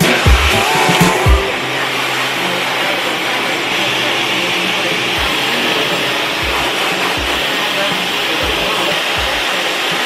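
A handheld hair dryer running steadily, blowing an even rush of air, switched on about a second in as the background music gives way to it.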